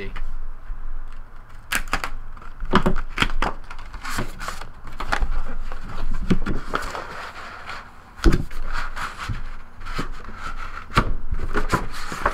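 Cardboard box sleeve being handled and slid off a wooden box: rustling and scraping with repeated light knocks, and one sharp knock about eight seconds in.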